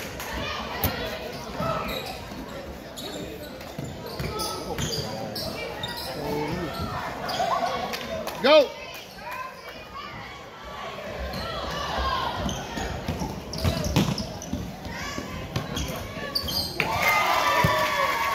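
Basketballs bouncing on a hardwood gym floor during a game, with a chatter of voices echoing around the hall. About halfway through there is one short, louder pitched sound.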